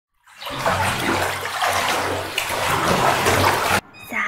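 A loud, steady rushing noise like running water, swelling in over the first half second and cutting off abruptly just before the end.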